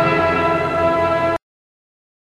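Orchestral film score holding a sustained chord, with strings prominent, that cuts off suddenly about a second and a half in.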